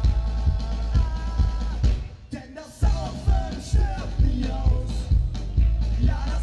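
A ska-punk band playing live, with drums, electric guitars, trumpet and singing, loud and full. The band holds long notes for about two seconds, drops out briefly, then comes back in on the beat.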